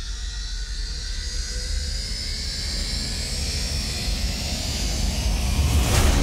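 A produced transition riser: a steady low bass rumble under a whooshing swell that rises in pitch and grows louder over several seconds, peaking at the end.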